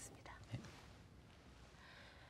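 Near silence: studio room tone, with a brief faint vocal sound about half a second in.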